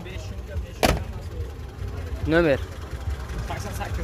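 A steady low rumble, with a single sharp knock about a second in and a short call from a man's voice near the middle.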